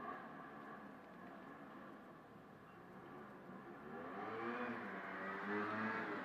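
Faint engine of a passing vehicle, its pitch rising and falling, growing louder in the second half over a low background hiss.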